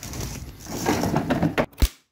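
Rough rubbing and scraping handling noise, close to the microphone, followed by a single sharp knock near the end.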